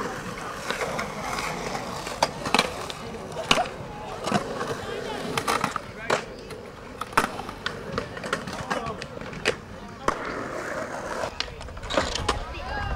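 Skateboards on a concrete skatepark: hard wheels rolling, with frequent sharp clacks and slaps of boards hitting the concrete at irregular moments, about one or two a second.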